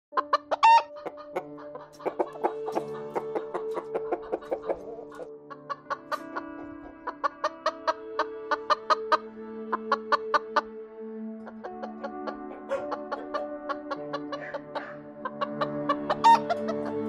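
Chickens clucking over light background music with held tones and short, quick notes.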